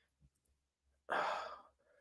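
A man's sigh: one breathy exhale about a second in, lasting about half a second and fading out.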